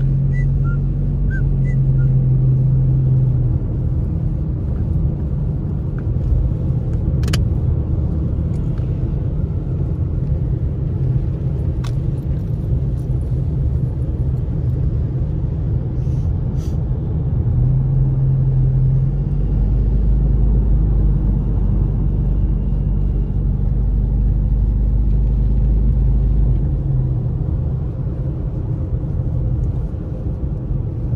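A car driving on a snow-covered road, heard from inside the cabin: a steady low rumble of engine and tyres, its hum shifting in pitch a few times, with a few faint clicks.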